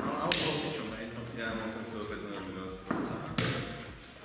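Sharp knocks of wooden chess pieces set down and chess clocks pressed during fast play: one about a third of a second in and two close together near three seconds, with voices talking between them.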